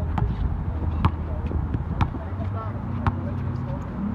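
A basketball dribbled on a hard outdoor court, bouncing about once a second, over a low steady hum.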